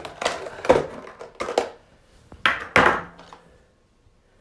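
Clear plastic clamshell packaging being handled and pulled apart: a run of sharp plastic clicks, crackles and knocks, loudest about two and a half to three seconds in.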